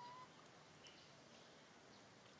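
Near silence: faint outdoor background, with one brief thin whistle-like animal call at the very start and a few faint high chirps about a second in.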